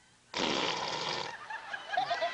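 A fart noise from a hidden sound-effects device starts suddenly about a third of a second in and lasts about a second. It is followed by laughter.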